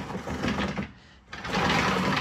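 Pull-out plywood shelf under a workbench, carrying a hobby laser engraver, being slid out by hand: two scraping slides, the first ending about a second in and the second starting halfway through.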